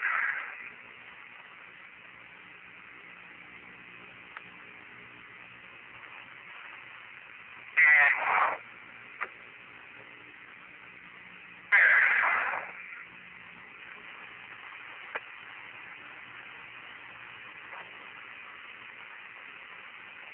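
Apollo lunar-surface radio channel hissing steadily with a faint hum, broken twice by short bursts of an astronaut's voice, about eight and twelve seconds in.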